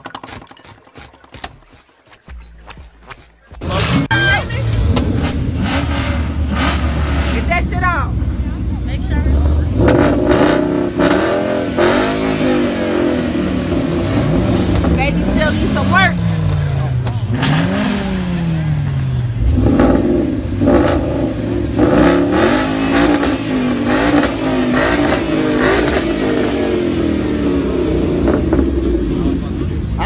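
Ford Mustang GT's V8 running loud in place, blipped up and down in a series of revs in the middle. It is on the stock exhaust manifolds, without headers yet.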